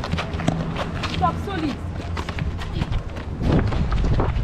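Quick footsteps and sneaker scuffs on a hard concrete court with knocks of a football at the players' feet, and a few brief shouts from children.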